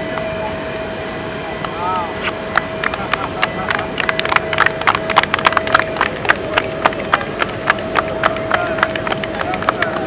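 A few people clapping in irregular, scattered claps, starting about two seconds in, over a steady whine and hum from a parked airliner.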